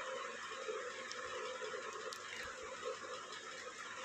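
Faint room tone: a steady low hiss with a couple of very faint ticks.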